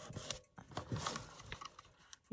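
Faint rustling and rubbing of paper as hands smooth and press a freshly glued sheet of decorative paper down onto a cardboard lap-book panel, with a few soft taps.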